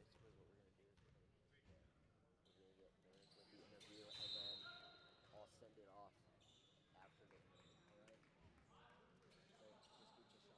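Faint, quiet gym sound during a high-school basketball game: distant voices and a basketball bouncing on a hardwood court, with a short high referee's whistle about four seconds in, the loudest moment.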